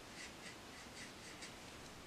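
Faint, soft strokes of a watercolor brush on a paper postcard, a few light brushing sounds a second.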